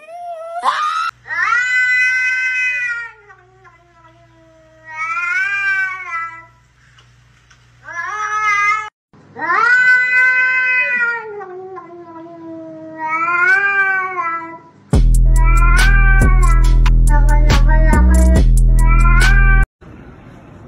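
A pug's long, wavering, drawn-out howls, the same cry repeated several times over a faint low hum. For the last five seconds the howl is chopped into a melody over a loud beat with bass and drums, which cuts off suddenly.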